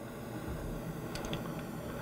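Quiet room tone with a faint steady low hum, and a couple of faint clicks about a second in.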